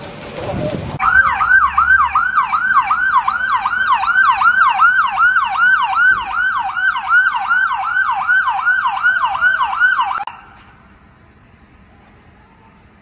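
Fire engine siren in a fast yelp, its pitch sweeping up and down about three times a second. It starts about a second in and cuts off suddenly near the end.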